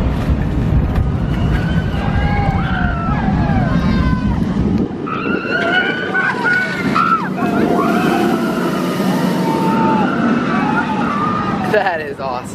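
Mako, a steel hyper roller coaster, with a train of riders screaming as it passes, over a low rumble that drops away about halfway through.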